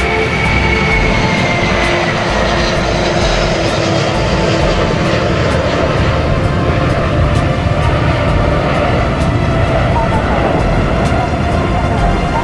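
Airbus A330 twin-jet engines at takeoff thrust as the airliner climbs away, a steady rumble with a high whine that falls in pitch over the first two seconds. Background music with a regular beat runs under it.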